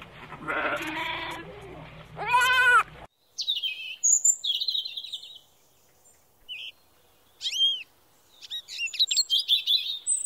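A goat bleating twice, the second bleat louder, cut off abruptly about three seconds in. Then an American robin singing: short phrases of chirps and whistles with pauses between, ending in a quick run of notes.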